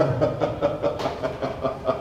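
Drawn-out laughter: an unbroken run of short 'ha' pulses, about five a second.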